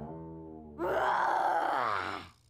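A woman's loud startled cry, falling in pitch, that begins a little under a second in and lasts to the end, after a brief stretch of background music.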